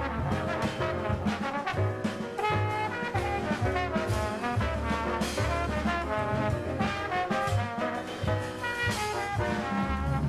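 Jazz trombone playing a melodic line over a quartet of piano, bass and drums with cymbals.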